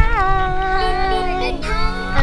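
A person's drawn-out, high-pitched wailing voice, held for over a second and falling slightly in pitch, then rising again near the end. Under it is heavy low rumbling and splashing from water at a camera held at the surface, with background music faintly underneath.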